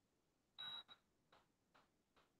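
Near silence, broken about half a second in by one brief faint high-pitched beep, then a few fainter ticks about every 0.4 s.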